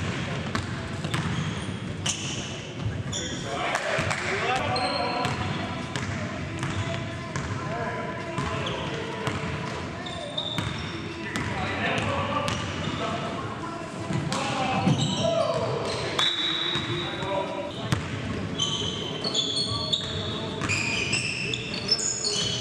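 Basketball game sound in a gym: a ball bouncing repeatedly on a hardwood court, with sneakers squeaking and players' voices calling out on the court.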